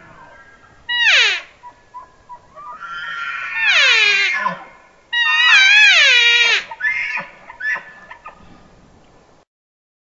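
Bull elk bugling: a short high squeal sliding down in pitch, then two longer bugles that climb to a high whistle and slide down, the last wavering at the top. A few short chuckles follow.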